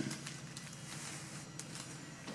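Quiet room with faint rustling and a few light clicks, as from a hand-held phone being moved over the table.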